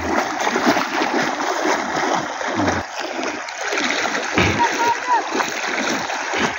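Steady splashing of legs wading through knee-deep floodwater, as people push a motorbike through the water.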